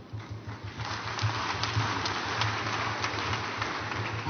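Audience applauding. The clapping swells about a second in and goes on as a dense patter of hand claps.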